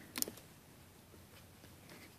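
A single faint click about a quarter second in, then near silence: room tone.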